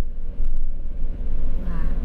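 Interior of a moving minibus: steady low engine and road rumble with a faint steady whine above it.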